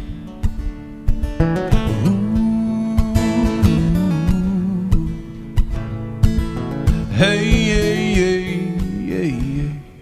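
Acoustic guitar strummed and picked through an instrumental break in a folk song, with a wavering held melody line above it about seven seconds in.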